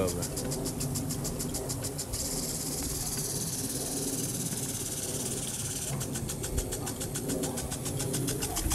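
Impact lawn sprinkler spraying water, its arm ticking rapidly, about ten ticks a second. The ticking gives way to a steady hiss of spray from about 2 s to about 6 s, then the ticking resumes.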